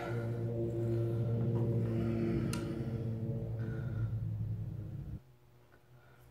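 Steady low machine hum, a motor or electrical device running with a few even tones, that cuts off suddenly about five seconds in. A light click sounds partway through.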